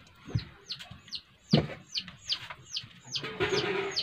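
A bird chirping over and over: short, falling chirps, two or three a second. Two dull thumps, the second the loudest sound, come in the first half, and a brief held low tone sounds near the end.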